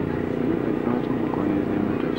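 Steady drone of a running engine, holding one even pitch, with faint voices in the background.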